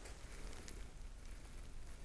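Faint fizzing of a carbonated raspberry lambic (Lindemans Framboise) in a narrow glass held up close, a soft crackle of bubbles with a few tiny pops over a low hum.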